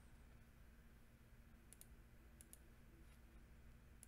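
Near silence: faint room tone with a steady low hum and a few small, faint clicks around the middle.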